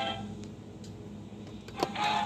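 The last note of a music cue cuts off, leaving the hiss and hum of an old film soundtrack between cartoons, with one sharp click near the end.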